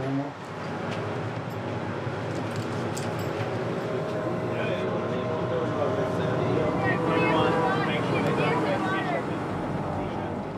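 Steady drone of ship's machinery with several held tones, while a crewed boat is lowered over the side on crane slings. Faint voices come in over it in the second half.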